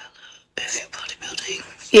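A young woman whispering under her breath, starting about half a second in.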